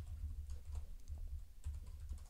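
Quick typing on a computer keyboard, about a dozen keystrokes in two seconds, as a password is entered; the keys land as soft clicks over dull low thumps.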